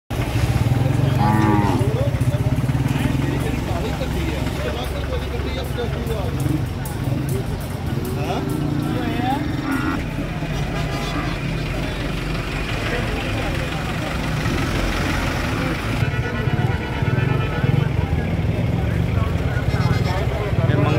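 Market din: a small engine running steadily close by, with people's voices calling and talking over it now and then.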